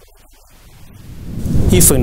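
An edit transition sound effect: a low rumble that swells over about a second into a loud, bright whoosh, leading into a man's voice at the very end.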